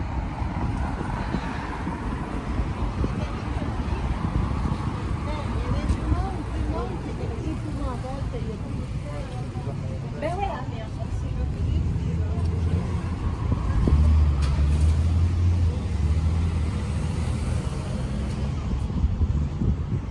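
City street traffic: a steady rumble of passing cars, with a vehicle's low engine rumble swelling and loudest around two-thirds of the way through. Snatches of people's voices can be heard in the middle.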